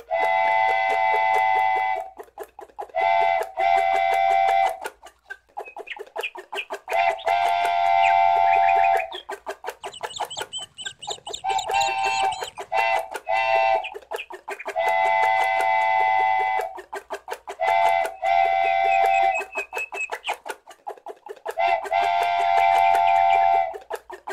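Cartoon steam-train sound effect: rapid steady chugging with repeated held whistle blasts, each about one to two seconds long, about eight times.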